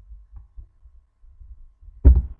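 Low rumble with faint soft thumps, and one light click about a third of a second in: a single key pressed on a computer keyboard.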